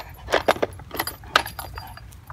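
Hard plastic baby toy clattering and cracking as a dog bites and drags it. A quick run of sharp clicks thins out near the end.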